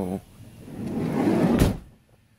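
Car door swung shut: a rising rustle of movement ending in one solid thud about one and a half seconds in.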